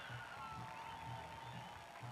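Faint ballpark background from the game broadcast: music over the stadium speakers with a soft low beat about three times a second and a few held notes, under a haze of crowd noise.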